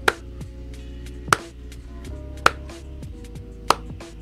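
Four sharp single hand claps at a slow, even pace, one about every 1.2 seconds, counting out twenty people one clap at a time. A soft music bed of held notes plays under them.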